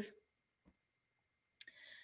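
Mostly near silence with a few faint clicks, one a little under a second in and a small cluster near the end, after a word trails off at the start.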